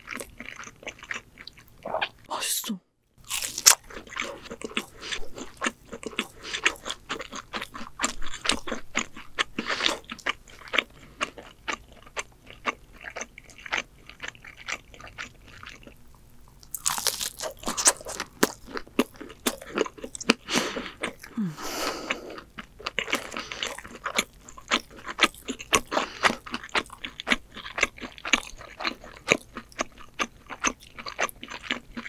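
Close-miked crunchy biting and chewing of ramen pizza, a crisp instant-noodle crust topped with melted cheese. The crunching is dense and irregular, with a moment of silence about three seconds in.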